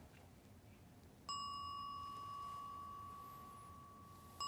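A single strike of a Korean temple wind bell (pungyeong), about a second in, with a clear ringing tone that slowly fades away.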